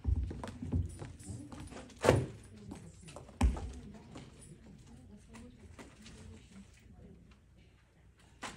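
Heeled shoes clicking on a tiled floor as a person walks, the steps closest together in the first few seconds, with two louder knocks about two seconds and three and a half seconds in.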